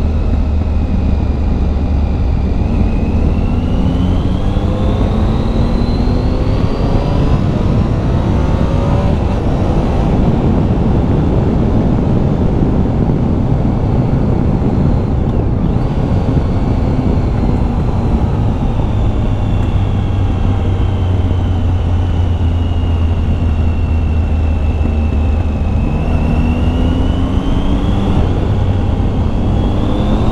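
Triumph Tiger 800's three-cylinder engine under way. The revs climb over the first several seconds, ease down slowly through the middle, and climb again near the end, over a steady low rush.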